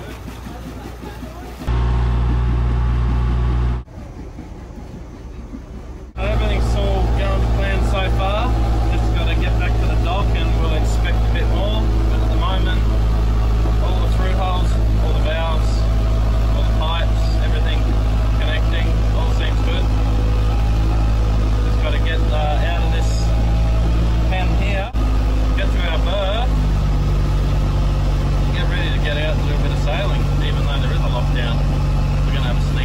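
Sailboat's inboard engine running steadily while motoring, heard from on deck, with voices over it. The engine note steps up near the end.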